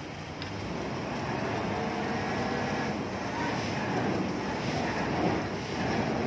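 Heavy diesel construction machinery running steadily, growing louder about a second in, as the concrete-filled tremie hopper and pipe are hoisted.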